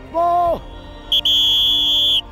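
A man shouts "Ball!" once, then about a second in a whistle sounds one long, steady, high-pitched blast, blown to stop play in a football practice drill.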